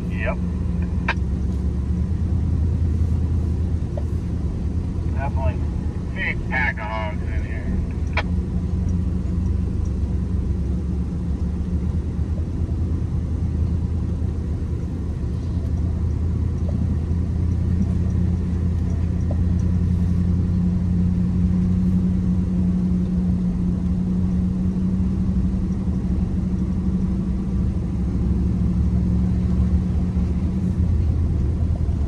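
A truck running, with a steady low drone throughout. Brief faint voices come in about six seconds in, and there is a single click shortly after.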